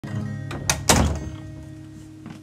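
Acoustic guitar strings left ringing, with a click and then two knocks about a second in, the second a loud thump. The ringing notes then fade away.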